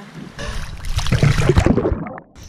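Sea water splashing and bubbling right against a waterproof camera as it goes under the surface. It builds about halfway through into a loud, crackling rush of bubbles.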